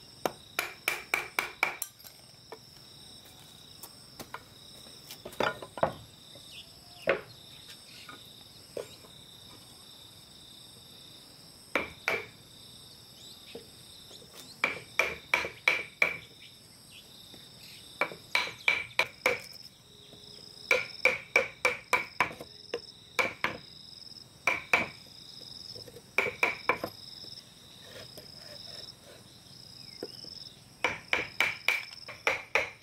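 Hand hammering on wood: quick runs of four to six blows with a short ringing note, and some single strikes between them. Insects drone steadily and high-pitched underneath.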